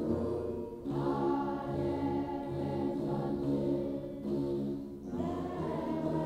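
Choir singing an Ethiopian Orthodox mezmur in unison, slow sustained phrases over the low plucked, buzzing notes of begena lyres. The singing breaks briefly about a second in and again near the end between phrases.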